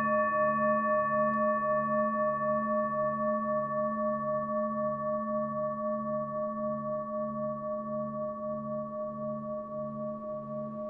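Singing bowl pitched to A ringing on after a strike and slowly fading, with a wavering pulse about twice a second.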